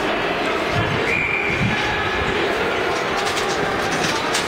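Steady hubbub of a crowd moving and talking at once. A short high-pitched tone sounds about a second in.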